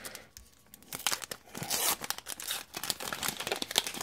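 A trading-card pack's wrapper torn open and crinkled by hand: after a short pause, a run of crackling and crinkling starts about a second in and carries on as the wrapper is peeled off the cards.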